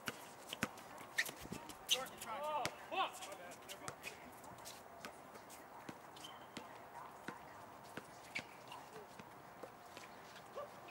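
Basketball dribbled and players' footsteps on an outdoor hard court: irregular sharp knocks, with players' short shouts about two to three seconds in.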